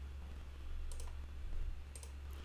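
Two faint computer mouse clicks, one about a second in and one near the end, over a steady low hum.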